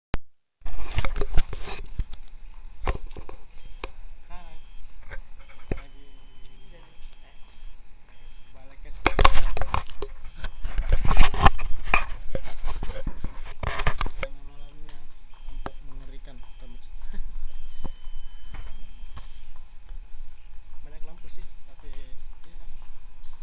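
Low voices talking on and off, mixed with loud rustling and knocking from a handheld camera being moved about, heaviest in the middle.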